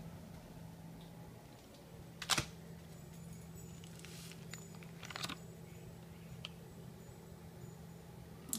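Phone handling noise: a few sharp knocks and rubs on the phone as it is held close over a slice of bologna, the loudest about two seconds in and another about five seconds in, over a faint steady low hum.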